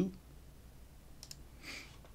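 Two quick computer mouse clicks about a second and a quarter in, followed by a short soft hiss, over faint room tone.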